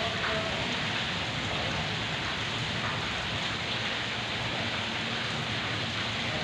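Steady rain falling, an even hiss that holds without a break.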